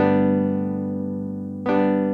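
Yamaha V50 FM synthesizer playing chords: one chord struck at the start rings and slowly fades, and a second chord is struck near the end.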